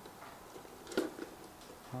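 Faint handling noises as a model truck's cab shell is lowered back onto the chassis, with one sharp click about a second in and a few lighter ticks around it.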